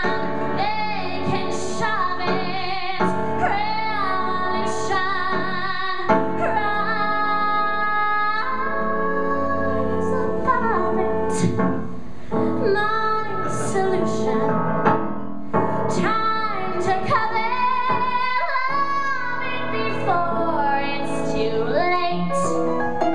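A woman singing a cabaret song, with vibrato and a long held note about seven seconds in, accompanied by a small live jazz band with upright bass.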